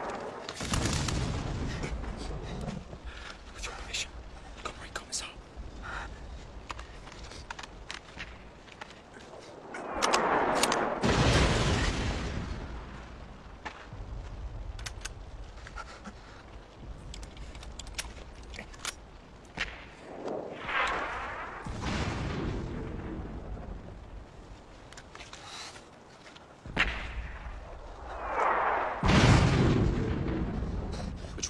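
War-film battle sound: scattered gunshots throughout, with several heavy explosions, the biggest about ten seconds in, others around twenty seconds and near the end.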